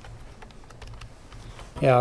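Computer keyboard keys tapped in a handful of separate, irregular clicks as a number is typed in.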